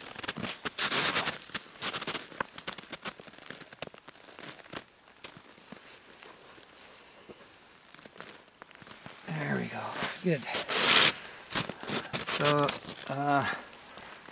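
Crackling, tearing and crunching as a ruffed grouse, held down by its wings under a boot on snow, is pulled apart by its feet to strip out the breast meat. The noise is densest in the first few seconds, then sparse crackles. A person's voice, without clear words, comes near the end.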